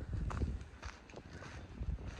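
Wind on the microphone, an uneven low rumble, with a few faint soft knocks.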